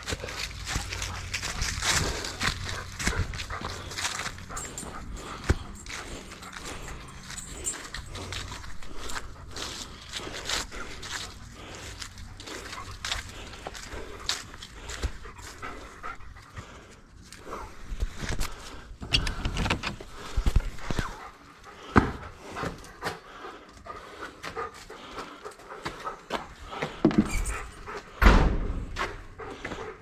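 Bernese mountain dog panting as it walks on a leash, with many short scuffs and clicks of footsteps and handling.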